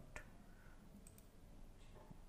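Faint computer mouse clicks over near silence: one just after the start and fainter ones about a second in.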